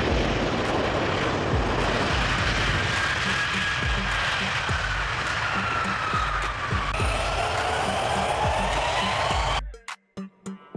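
Embraer KC-390 Millennium's twin turbofan jet engines running at high power on the runway: a steady rush with a whine that slides down in pitch, and a second whine rising near the end, all cutting off suddenly at the end.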